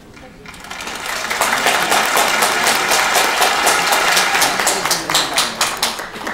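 An audience applauding: the clapping builds over the first second or so, holds dense and loud, then thins to separate claps near the end.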